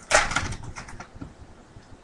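Foil trading-card pack wrapper being torn open by hand: a short crinkly rip just after the start, trailing off into faint rustling within about a second.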